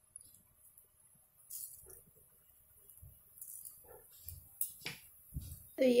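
Cumin seeds frying in hot oil in a frying pan, crackling faintly with a few scattered small pops over a soft hiss. A soft low thump about five seconds in.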